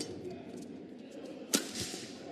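Badminton racket strikes on the shuttlecock during a rally: a sharp crack about a second and a half in, the loudest sound, with a softer hit at the start, over a low steady hum of arena crowd noise.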